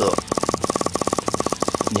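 Tokyo Marui SOCOM Mk23 non-blowback gas pistol firing a rapid, evenly spaced string of shots, about a dozen a second, each a sharp crack with a short ring. It is being emptied of HFC134a gas in a shots-per-gram test.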